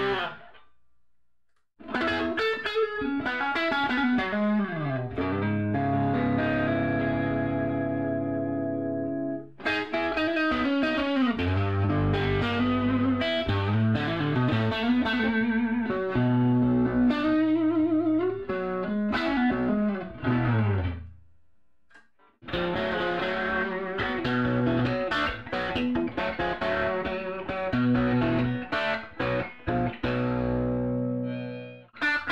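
Electric guitar played through a 1960 Fender Tweed Deluxe tube amplifier: phrases of ringing chords and single notes with pitch bends and slides. There is a short break near the start and another about two-thirds of the way through.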